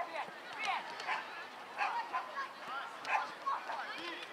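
Young boys shouting and calling to one another during play, several high voices overlapping in short yells.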